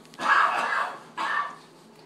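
Two short breathy bursts of a person's laughter, the first longer and louder, the second brief.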